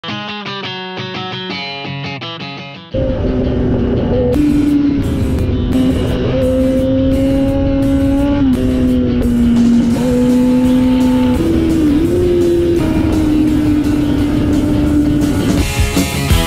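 Plucked notes of music, then about three seconds in a sport motorcycle's engine cuts in loudly, running at high revs on the move over a broad rush of road noise. Its pitch holds steady, drops once about halfway through, and rises again later.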